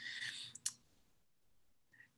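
A single short click about two-thirds of a second in, then near silence.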